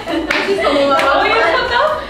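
Several young women laughing together and clapping their hands. Two sharp claps stand out, about a third of a second in and about a second in.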